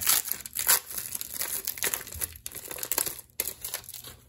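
The crinkly wrapper of a SkyBox basketball card pack being torn open and crumpled by hand: a run of irregular crackles and rustles.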